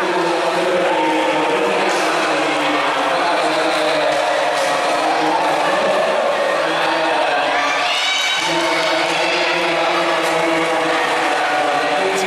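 Many voices chanting or singing together, holding long notes that shift in pitch, with a rising sweep about two-thirds of the way through.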